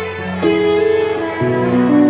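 Soprano saxophone playing a slow melody of long held notes, moving to a new note about half a second in and again a little before the end, over a sustained accompaniment.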